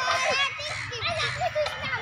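Children's voices talking and calling out over one another while they play, high-pitched and overlapping, loudest in the first half second.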